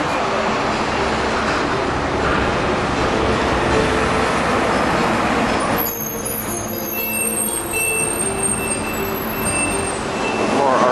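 Road traffic on a busy city street: steady vehicle engine and tyre noise with a faint hum. About six seconds in it eases slightly and thin high whistling tones come in.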